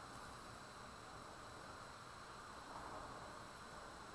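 Very faint, steady hiss with the soft rub of a Sharpie permanent marker tracing a wavy line on drawing paper.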